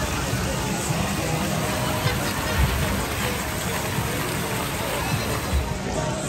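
Busy pedestrian-promenade ambience: crowd chatter and background music over the steady splashing of a fountain.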